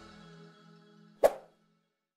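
Outro music dying away to faint held tones, then one short sharp pop a little past the middle: a click sound effect for an animated on-screen subscribe button.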